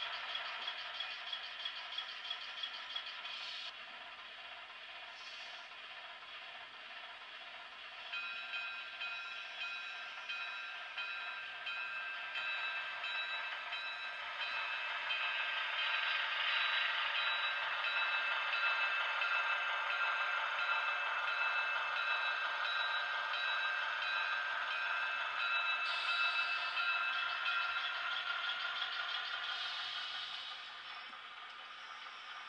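HO-scale Southern Pacific diesel switcher model running along the layout track, with a steady engine-like pitched sound that grows louder about halfway through. A quick ticking comes in the first few seconds.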